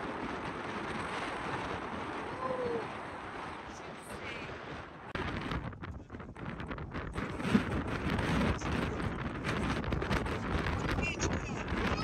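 Wind blowing across the microphone over the steady wash of sea surf breaking on rocks below, with the wind gusting harder about halfway through.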